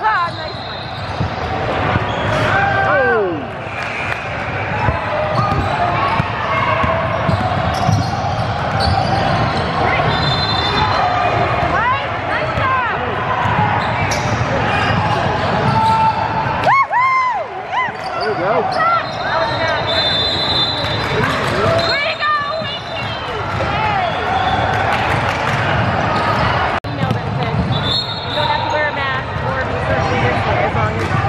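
Indoor basketball game: a ball bouncing on the hardwood court and sneakers squeaking in short bursts, over the chatter of players and spectators, all echoing in a large gym.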